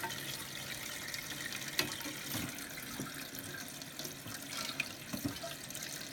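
Toilet tank refilling: a steady hiss of water running in through the fill valve, with a few light clicks as the flush lever arm and flapper chain are handled.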